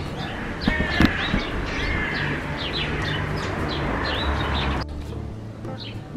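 Small birds chirping again and again in short, quick calls over steady outdoor background noise, with a couple of handling bumps about a second in.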